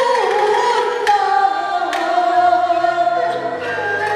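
Taiwanese opera (gezaixi) singing: a performer's voice with wavering vibrato over the troupe's instrumental accompaniment. Two sharp percussion strikes come about one and two seconds in, and a low bass line joins past the midpoint.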